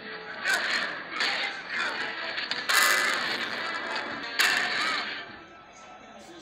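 Action-film soundtrack: music with a series of sudden crashing hits, the strongest about three seconds and four and a half seconds in, then falling quieter near the end.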